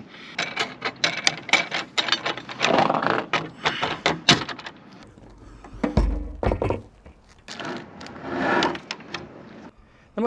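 Metal hardware clicking and clinking as M8 bolts, washers and lock nuts are handled and set into a roof-rack mounting rail, with scraping and rustling, and one heavy low thump about six seconds in.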